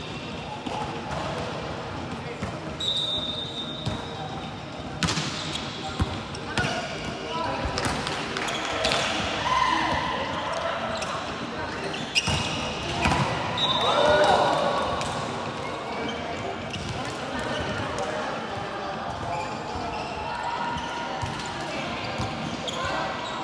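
Indoor volleyball play echoing in a large sports hall: the ball being struck a few times, short high squeaks of sneakers on the court floor, and players' voices calling out.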